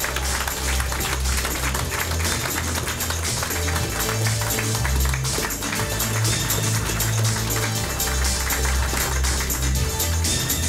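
Upbeat music with a bass line and a steady beat, with an audience clapping along.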